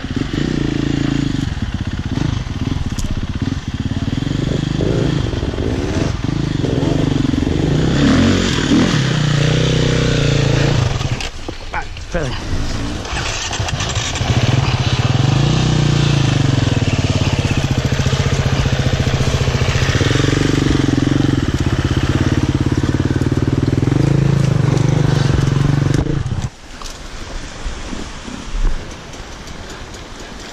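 Enduro dirt bike engine (Sherco) under the rider, revving up and down as it pulls over rough singletrack, with a short dip in revs about a third of the way in. It then runs at steadier, higher revs before the sound drops away abruptly near the end.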